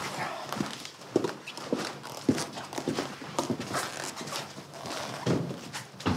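Footsteps on a hard floor, a series of sharp, unevenly spaced steps at roughly two a second.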